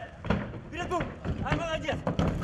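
Indistinct voices of people talking, with a few short thuds among them.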